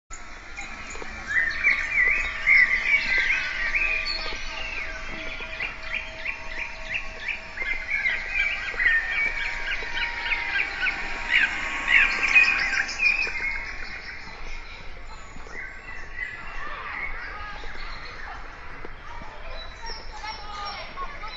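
Many birds chirping and singing together: a dense run of quick rising and falling chirps that thins out after about fourteen seconds, over a few faint steady held tones.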